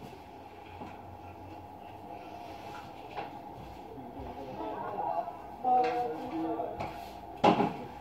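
A few knocks in a quiet room, with one sharp knock near the end and faint voices about two-thirds of the way through.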